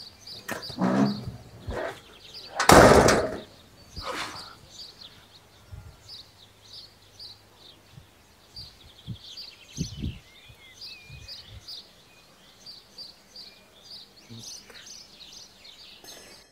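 Outdoor street ambience with small birds chirping over and over, a few short high notes each second. A brief loud rush of noise comes about three seconds in, with softer ones just before and after it, and a few dull thumps fall near the middle.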